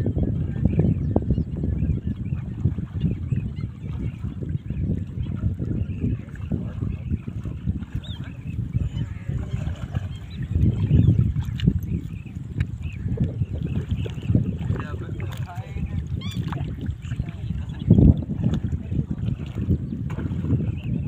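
Shallow water sloshing and splashing as several people wade and work a net, over a dense, uneven low rumble, with voices in the background.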